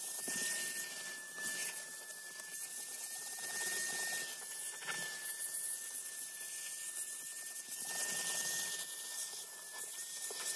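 Vacuum cleaner running through a hose and crevice nozzle as it is worked over car floor carpet: a steady hiss with one even, high-pitched whine.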